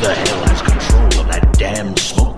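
Breakbeat electronic dance music: a chopped drum break with sharp snare and hi-hat hits over heavy booming bass, and a pitched sound bending up and down in the middle.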